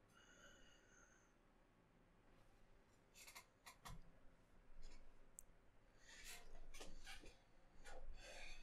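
Gaming chair creaking and clicking as a seated person shifts his weight: a few short sharp creaks around three to four seconds in with a low thump, then a denser run of them in the second half.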